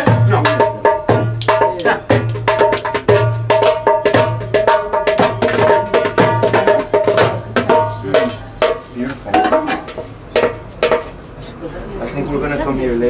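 A hand drum being tried out with quick, rhythmic strikes of the hands over a steady low pulse, with voices talking over it.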